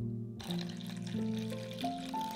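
Background music of held notes stepping in pitch. Under it, about half a second in, milk starts pouring in a thin stream into a stainless steel bowl of beaten eggs, a soft continuous splashing hiss.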